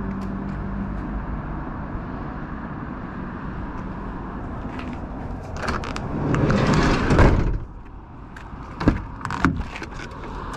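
Van side sliding door on a Citroen Relay rolled shut along its runner and closing with a loud bang about seven seconds in, followed by a couple of sharp clicks near the end as the cab door latch is worked.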